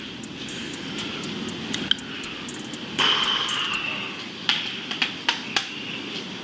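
Steady rushing background noise picked up by a police body camera's microphone as the officer moves through an apartment. It gets suddenly louder about halfway, and several sharp clicks or knocks follow near the end.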